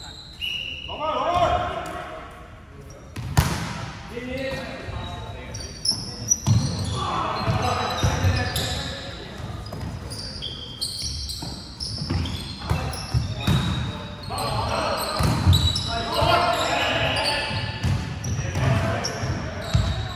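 Indoor volleyball rally: the ball is struck repeatedly with sharp smacks, and players shout calls. Everything echoes in a large sports hall.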